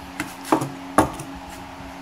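Two sharp knocks about half a second apart, with a smaller one just before: metal swivel casters being set down on a plywood tabletop.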